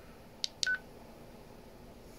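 Two quick button clicks on a Baofeng K6 handheld radio about half a second in, the second followed by a short, high beep from the radio's key tone.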